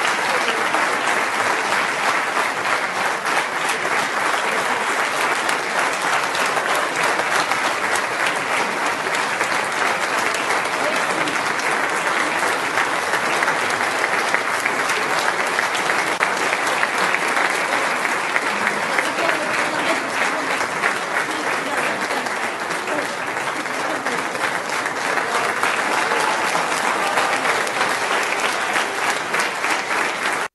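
Sustained applause from a large hall full of delegates clapping, a dense, steady ovation that neither swells nor fades.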